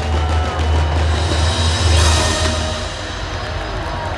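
Show music with heavy drums playing through a fireworks finale. Shells burst and crackle over it, with surges of crackle at the start and about two seconds in.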